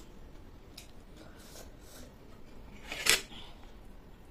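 Close-up eating sounds from a person chewing momo dumplings: faint wet clicks and soft mouth noises, with one short, loud, sharp mouth or handling sound about three seconds in.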